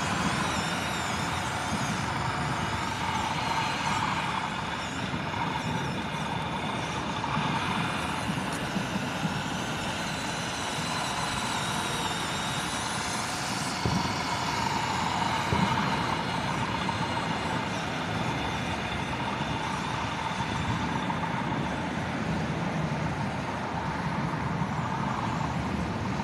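1/14-scale RC Caterpillar bulldozer running and pushing dirt: a steady machine sound of its drive and tracks, with a faint wavering whine.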